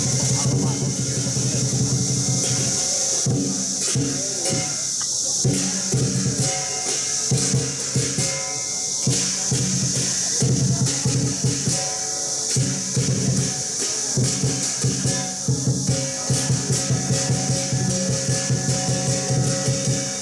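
Chinese lion-dance percussion playing continuously: a large drum beaten in a driving rhythm with cymbals and gong clashing over it, accompanying a kung fu form.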